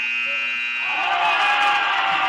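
Gym scoreboard buzzer sounding the end of the quarter: one long, loud, steady horn tone. About halfway through, shouting voices from the crowd rise over it.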